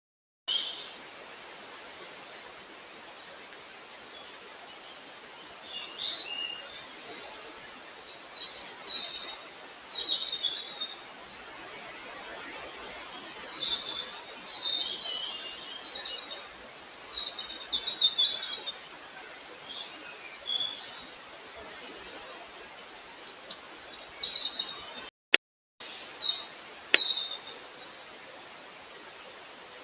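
Songbirds singing and calling in woodland, many short high chirps and phrases coming one after another, over a steady background hiss. The sound drops out briefly about three-quarters of the way through, with sharp clicks around it where one trail-camera clip ends and the next begins.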